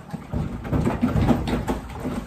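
A yearling Percheron filly playing with the water in her stall waterer: a run of loud, rough noise made of many small knocks, starting about a third of a second in.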